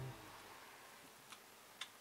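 Faint handling noise of a plastic mounting arm being fitted to a kayak tackle pod: a low knock at the start, then two short sharp clicks about half a second apart near the end.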